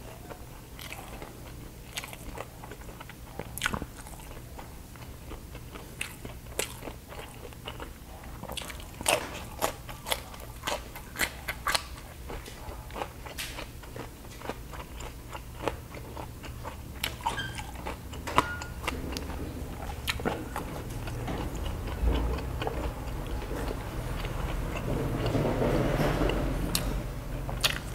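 Close-up chewing of crispy baked pork belly skin, with a run of sharp, irregular crunches that come thickest about ten seconds in.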